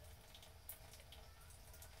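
Near silence: room tone with a faint low hum and a few faint ticks.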